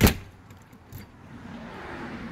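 A single sharp thump right at the start, followed by a quieter steady outdoor background with a faint click about a second in.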